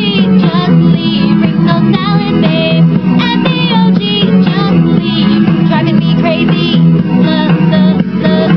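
A woman singing a pop song parody over an electronic backing track, her voice moving in short melodic phrases over a steady low bass line.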